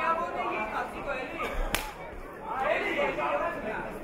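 People's voices in the hall throughout, with one sharp smack a little under two seconds in: a kickboxing strike landing on a fighter.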